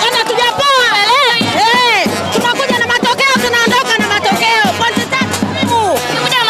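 Crowd of football fans singing a celebration song, with a quick steady drumbeat joining in about two seconds in.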